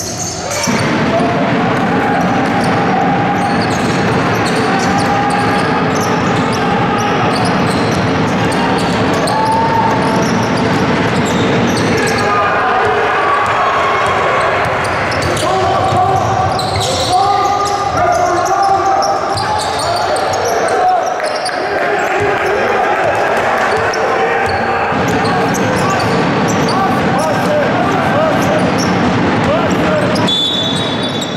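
Live basketball game sound: a basketball bouncing on the hardwood court over a steady din of indistinct voices.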